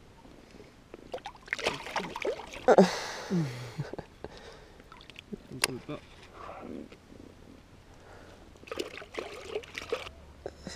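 Water sloshing and splashing around a pike held at the surface beside a float tube while it is unhooked, with a short exclamation about three seconds in.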